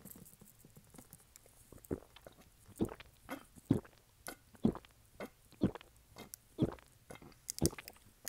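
A person gulping a drink from a bottle, swallowing about once a second from about two seconds in.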